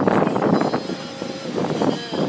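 Wind buffeting a phone's microphone on a beach, rough and gusting, over the wash of small waves breaking on the shore.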